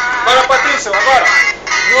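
A man's voice comes in over pop music and begins singing the song's opening words, with a brief drop in loudness just before the chorus.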